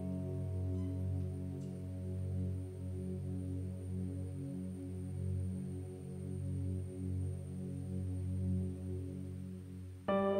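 Soft background music: low keyboard chords held steadily as a drone, gently wavering, with no melody.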